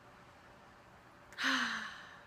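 A girl's breathy sigh about a second and a half in, falling slightly in pitch, after a quiet stretch of room tone: an appreciative exhale on smelling a cologne.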